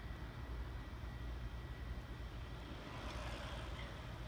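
Quiet outdoor background with a low rumble, and faint tyre hiss rising about three seconds in as a recumbent trike rolls past on pavement.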